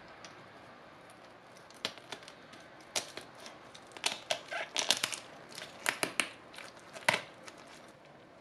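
Kitchen shears cutting through crisp roast duck skin and bone: a string of irregular crunchy snips and cracks that begins about two seconds in.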